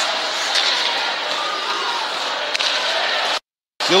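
Ice hockey arena crowd noise: a steady hum of many voices in a large hall during play. The sound cuts out to silence for a moment near the end.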